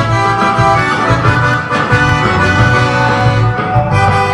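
Crucianelli piano accordion playing a sertanejo melody, with sustained treble-reed notes and chords over steady bass notes from the left-hand buttons.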